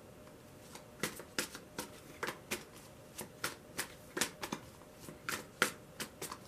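A tarot deck being shuffled overhand, the cards slapping and flicking against each other about three times a second, starting about a second in.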